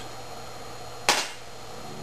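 A single sharp click-like knock about a second in, as a light aluminium can pot or windscreen is handled and set down, over a low steady background.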